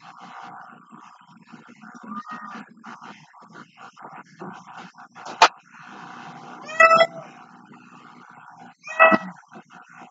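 A cat meowing twice, two short calls about two seconds apart near the end, after a sharp click about halfway through.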